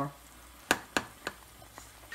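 A metal spoon stirring chicken in a simmering sauce in a pot, knocking against the pot four times, the first knock the loudest, over a faint sizzle from the pan.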